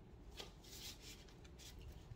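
Faint rustling and scraping of a cardboard gatefold LP jacket being handled, in a few short bursts.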